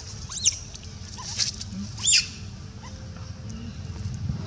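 Infant long-tailed macaque crying: two short, high squeals that rise and then fall, about a second and a half apart, with a brief rustle between them.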